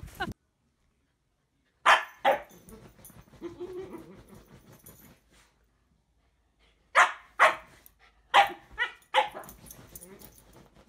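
Husky puppy barking: two barks about two seconds in, then a run of five closer together in the last three seconds.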